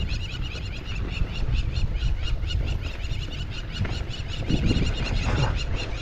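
Birds calling in a fast run of short, sharp notes, about five a second, which die away a little past halfway, over a steady low rumble of wind on the microphone.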